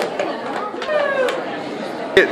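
Crowd chatter and voices in a large hall, with a sharp clack right at the start from a box hockey stick hitting the puck in the plastic crate.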